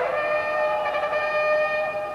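A single long brass note, held steady after a slight drop in pitch at its start.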